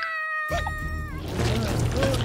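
A cartoon ant's high-pitched whining cry, held level for about a second, like a meow. Then a low rumble under background music.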